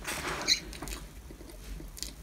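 Faint rustling and handling noise as a marshmallow is pushed into an already stuffed mouth, with a short high squeak about half a second in.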